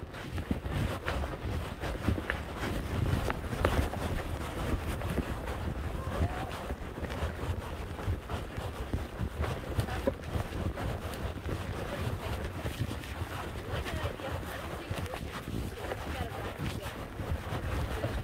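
Wind rumbling on the phone's microphone, with scattered light knocks and rustles from movement.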